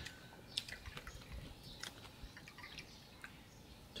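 Faint, scattered small clicks and ticks of a meal at the table: tableware and glasses handled while soju is poured into shot glasses and porridge is eaten.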